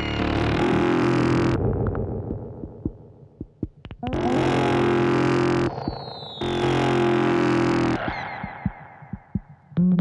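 Blippoo Box and Benjozeit synthesizers patched together, playing harsh, distorted electronic noise in loud bursts of about one and a half seconds that cut off abruptly. After each burst the sound thins out into scattered clicks and crackles, with a few falling whistling glides.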